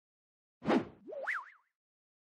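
Logo-animation sound effects: a short whoosh about half a second in, then a springy boing whose pitch jumps up and down in a zigzag as it climbs, stopping abruptly before the end.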